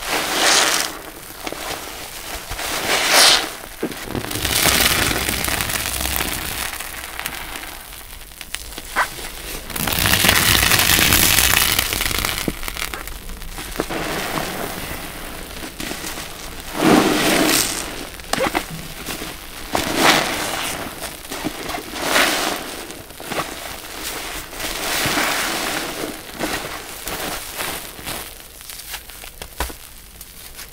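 Foam sponges squeezed by hand in thick laundry-detergent suds: wet squelching and crackling of the foam in irregular swells, with a longer, louder squeeze about ten seconds in.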